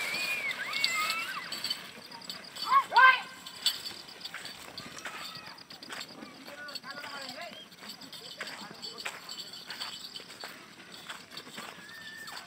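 Men shouting to drive a yoked pair of Ongole bulls, with a loud shout about three seconds in, over an irregular patter of hooves and running feet on dirt. The shouts grow fainter as the bulls and runners move away.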